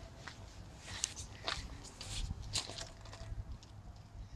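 Quiet footsteps on a gravel and dirt yard: a few irregular scuffs and crunches.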